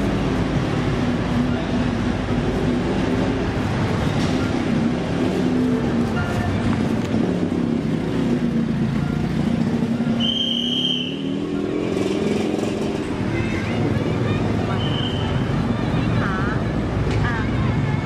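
Street traffic noise: vehicle engines running and passing in a steady wash, with a brief high-pitched squeal about ten seconds in and a shorter one about five seconds later.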